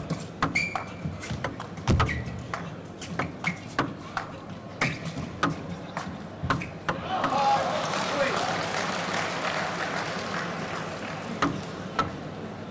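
Table tennis rally: the celluloid ball clicking off the bats and the table in a quick, uneven rhythm for about seven seconds. The point ends and the crowd breaks into cheering and applause for several seconds.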